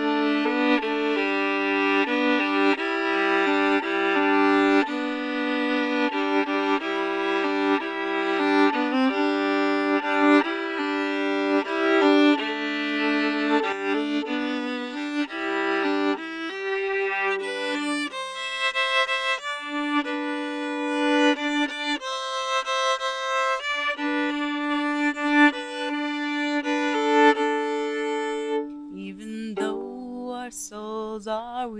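Violin played with a bow: a melody of sustained notes that climbs into a higher, brighter register about halfway through.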